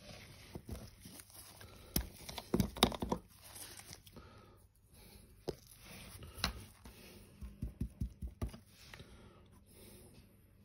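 Sponge dabbing rust paint onto a test panel: a series of short taps and knocks, bunched about two to three seconds in and again near eight seconds.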